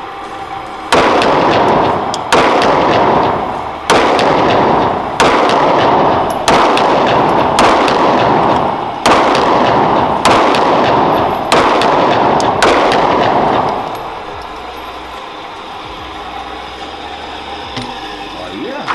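A Taurus 9mm pistol firing about ten slow, evenly spaced shots, roughly one every second and a half. Each loud report rings on in the echo of an indoor firing range. The firing stops about two-thirds of the way in.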